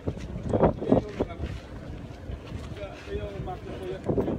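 Wind gusting on the phone's microphone, a low rumbling buffet loudest in the first second, with a faint voice speaking underneath.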